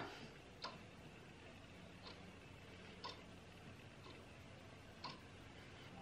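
Near silence: room tone with a few faint, short ticks about a second apart.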